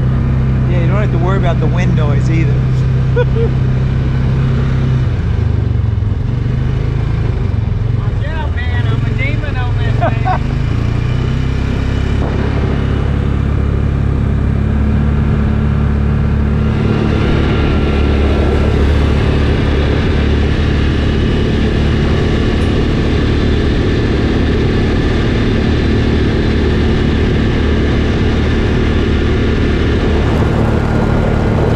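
Utility side-by-side (UTV) engine running steadily while it drives along a dirt and gravel track. The drone shifts in pitch a few times as the speed changes.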